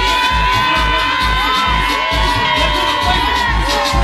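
Club dance track playing loud, its bass kick steady at about two beats a second while the fast high percussion drops out and a long held high note runs over it. A crowd cheers along.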